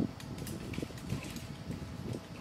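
Handling noise of an aluminium extrusion rail and bed plate being picked up and turned by hand: an uneven low rumble with a few light clicks.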